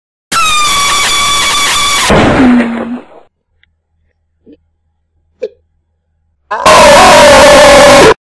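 Very loud, distorted cartoon sound effects. A sustained high scream-like tone lasts about two seconds and ends in a noisy crash with a low sliding tone. After two faint clicks, a second sustained scream-like blast at full level starts about a second and a half before the end.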